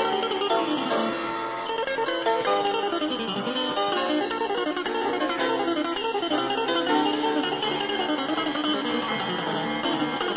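Jazz guitar and piano duo playing live, the acoustic archtop guitar in quick runs of notes that rise and fall. Recorded straight from the mixing desk onto cassette tape.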